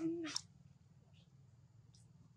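A short, low vocal call from a monkey, lasting about half a second at the start, ending with a sharp click.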